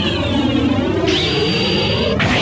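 Anime fight sound effects: a swirling whoosh, then about halfway a sudden high, steady ringing tone that cuts off abruptly near the end.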